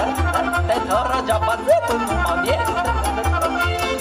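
Live Romanian folk music from an amplified band, a wavering melody over a steady bass beat.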